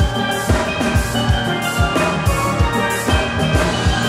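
Steel band playing: many chrome steel pans ringing out a tune together over a steady low beat of about two beats a second.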